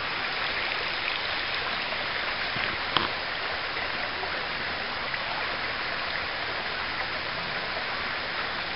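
Shallow river running over stones: a steady rushing of water. A single short click about three seconds in.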